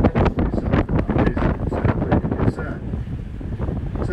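Wind buffeting the microphone on the open deck of a moving boat, gusting unevenly, stronger in the first half and easing near the end.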